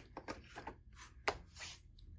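Faint handling noise of a plastic overgrip package at a display hook: light rustling and small clicks, with a sharper click just past halfway followed by a brief rustle.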